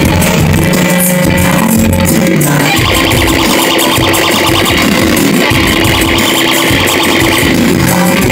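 Loud live band music with guitar and no singing, as an instrumental passage. A pulsing bass-heavy beat gives way about two and a half seconds in to a denser, brighter section.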